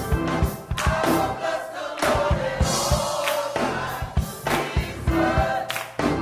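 Gospel choir singing over a steady, regular beat.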